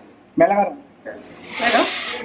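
A short voiced exclamation about half a second in, then a breathy, hissing vocal sound near the end, part of the couple's joking and laughter.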